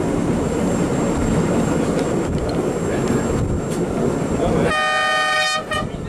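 Are 4/4 25 railcar under way, its wheels rumbling steadily on the rails, heard through an open window. Near the end its horn sounds one blast of about a second, followed by a short second toot.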